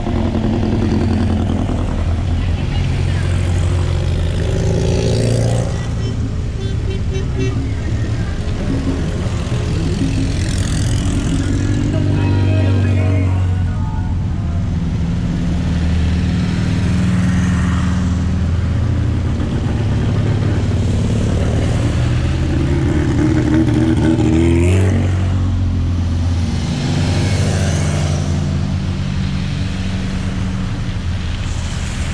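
A procession of Volkswagen-based dune buggies driving past one after another, engines running and tyres hissing through water on a wet road, with several rising-and-falling pass-bys.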